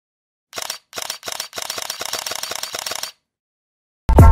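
Camera shutter clicks: three single clicks, then a quick run of rapid-fire clicks for about a second and a half that stops abruptly.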